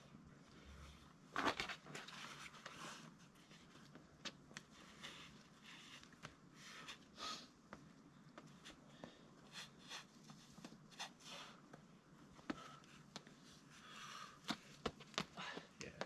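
Faint scuffs, scrapes and short taps of climbing shoes and hands on rock as a boulderer moves up and over the top of a slab, a scatter of small clicks with a louder scrape about one and a half seconds in.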